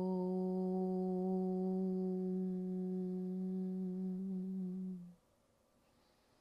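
A woman's voice chanting a single long Om on one steady pitch, the sound softening into a closed-mouth hum and ending about five seconds in.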